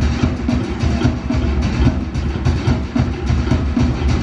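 Fast, steady drumming with a heavy low beat, the drum accompaniment to a Polynesian fire-knife dance.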